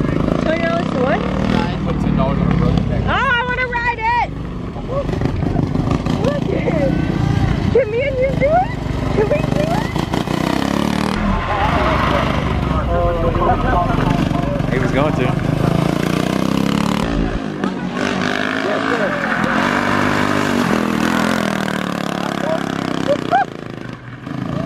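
Vehicle engines running in the lot under the overlapping chatter of a crowd of people.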